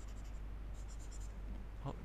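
Pen stylus scratching and tapping on a tablet screen in short strokes while annotating, over a steady low electrical hum.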